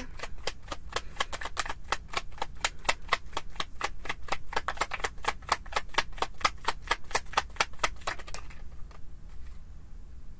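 A deck of tarot cards being shuffled by hand: a quick, even run of light card slaps, about six a second, that stops about eight and a half seconds in.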